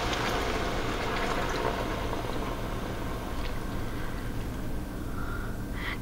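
Lukewarm water pouring from a measuring cup into a hot pot of cabbage and frying sausage, with the sizzling and bubbling dying away as the water cools the pot.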